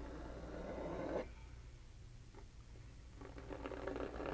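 Metal palette knife scraping through thick wet heavy-body acrylic paint on a gesso-coated board: a rough rasping drag that grows slightly louder and stops about a second in, with a fainter scrape starting again near the end.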